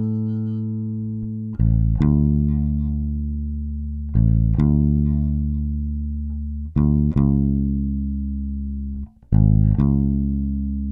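Electric bass guitar, a four-string Jazz Bass type, played fingerstyle with nothing else: slow, low notes, each a quick short note followed by a long held one that rings and fades, coming about every two and a half seconds.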